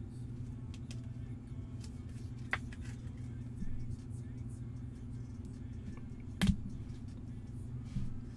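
Trading cards being handled and sorted on a table: a few faint clicks and one sharp knock about six and a half seconds in, over a steady low hum.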